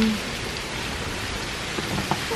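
A steady, even rushing noise with no tone in it, after the end of a spoken 'um' at the very start.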